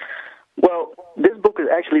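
A man speaking over a telephone line, his voice thin and cut off above the middle range.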